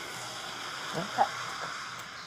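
A brief spoken reply, "Yeah, OK", over a steady outdoor hiss.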